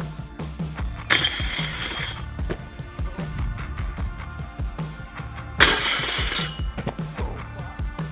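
Rock music with a steady beat. Over it, a mountainboard grinds a metal rail twice, each a scraping slide of about a second with a high ringing note, the first about a second in and the second a little past halfway.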